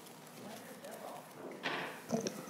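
Quiet hearing-room tone with faint, indistinct talk and a brief soft noise near the end.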